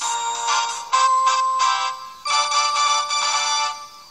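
A short electronic news-bulletin jingle between items: three bright synthesized chime-like chords in a row, the last held longest, about a second and a half.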